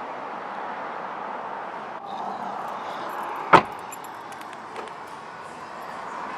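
Steady outdoor background noise in a parking lot, with one loud, sharp thump about three and a half seconds in and a few faint clicks after it.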